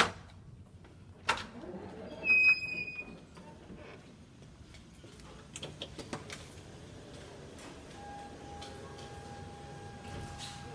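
A badge-secured double door unlatching and being pushed open: a sharp click about a second in, then a short high-pitched squeal, the loudest sound. Footsteps follow, and a faint steady tone comes in near the end.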